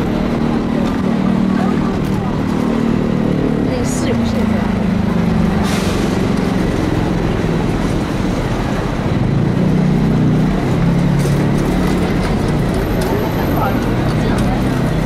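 Busy city-street ambience on a crowded sidewalk: road traffic passing with a low engine drone that slowly falls and rises in pitch, and people talking indistinctly nearby.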